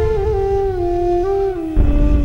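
Film background score: a single held melody note line, flute-like, stepping slowly down in pitch over a low rumbling bed. Near the end the low rumble swells suddenly louder.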